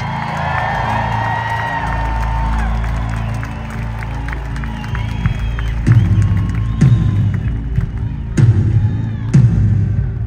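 Arena crowd cheering and whooping over a low, sustained drone. About six seconds in, heavy, slow drum beats start in an uneven rhythm: the live band opening its next song.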